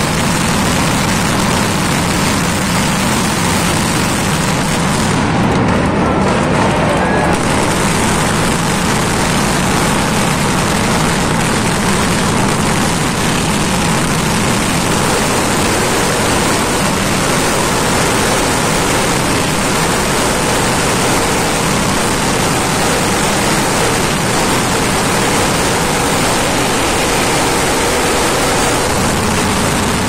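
Mascletà firecracker barrage: firecrackers going off so rapidly that they merge into one loud, continuous rattle with no gaps.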